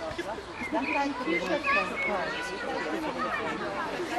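Indistinct chatter of several people's voices.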